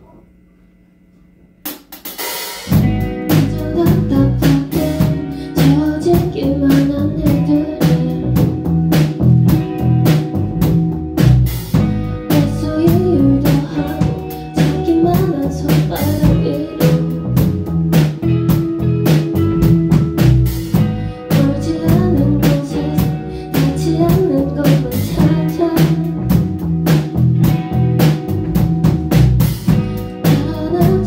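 Live rock band playing an instrumental passage: drum kit with snare and bass drum, and electric guitar. The band comes in abruptly about two seconds in after a quiet moment, then plays on at full volume.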